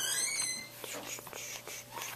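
A person whispering softly, with a few faint ticks.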